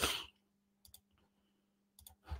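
Two quick computer mouse clicks close together, like a double-click, about a second in, over a faint steady electrical hum.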